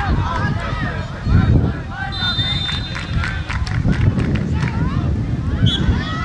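Shouting and calling voices of players and spectators at an outdoor football match, in short overlapping bursts, over a steady low rumble.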